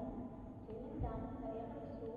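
Background music: a smooth, voice-like melody of held notes over a soft low thump.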